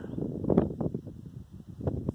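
Wind buffeting the microphone: an uneven, gusting low rumble, with a few brief sharper knocks.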